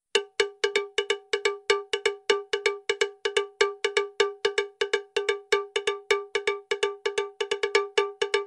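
A fast run of identical struck, bell-like percussion notes, about five a second on one unchanging pitch, each ringing briefly. It is an edited-in track rather than a live sound, starting abruptly out of dead silence.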